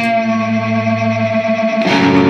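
Rock music: a guitar chord struck at the start and left to ring over a held low note, with the next chord struck near the end.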